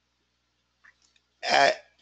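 Near silence, then about one and a half seconds in a single short vocal sound from a hoarse man, lasting under half a second.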